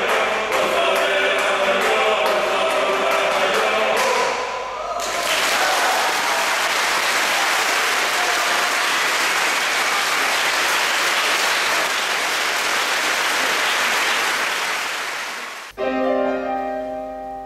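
A Georgian male folk choir holds the last chord of a song for about five seconds while clapping begins. It gives way to about ten seconds of steady audience applause, which cuts off suddenly just before the end.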